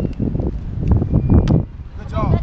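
Wind buffeting the camera microphone: a loud, uneven low rumble, with a couple of faint clicks about a second in.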